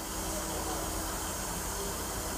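Steady, even hiss of railway platform background noise with no distinct event, and a faint steady hum in the first half.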